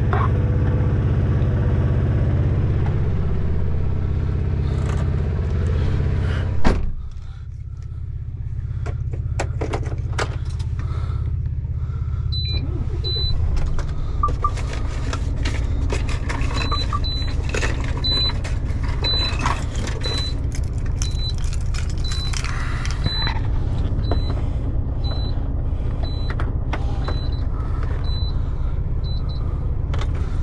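Road train's engine running at idle, heard in the cab as a steady low rumble. About seven seconds in a sharp knock is followed by a quieter, more muffled sound. After that come scattered clicks and a series of short, high beeps about one and a half a second.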